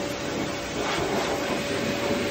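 Electric pet grooming blower running steadily: an even rush of air with a constant mid-pitched motor hum.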